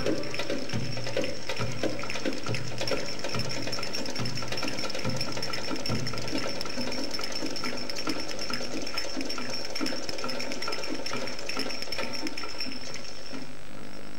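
Drum-led percussion break in belly-dance music: fast rattling strokes over heavier beats about twice a second, with no melody. A thin steady high tone runs over it and cuts off just before the end.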